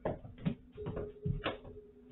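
Juggling balls dropping and hitting the floor: a quick series of about five knocks and thuds in under two seconds, over a faint steady hum.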